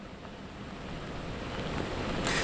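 Steady hiss of heavy rain with wind noise on the microphone, slowly getting louder.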